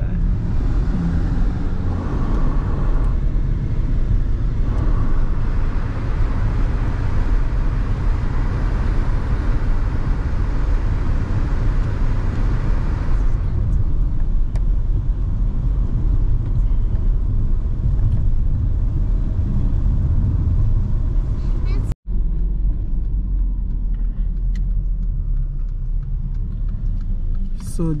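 Steady low road rumble of a car driving, heard from inside the cabin, with a higher hiss over it that stops about halfway through. The sound drops out briefly a few seconds before the end, then the rumble carries on more quietly.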